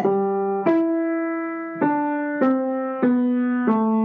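Piano played one note at a time: six single notes, each struck and left ringing until the next, the line rising once and then stepping downward. The notes sound even, each played with the forearm's weight behind the finger.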